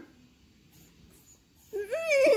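Small long-haired dog whining: after a brief lull, a loud wavering, falling cry begins near the end.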